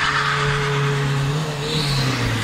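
Station wagon's engine revving hard as the car pulls away at speed, a steady high engine note with a harsh rush of noise at the start.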